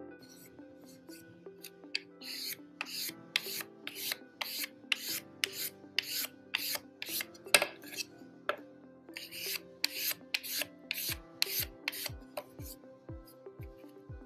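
Sandpaper worked by hand over the edges and corners of a veneered MDF-core coaster, rounding them over. The sanding comes as a run of short strokes, about two a second, starting a couple of seconds in, over soft background music.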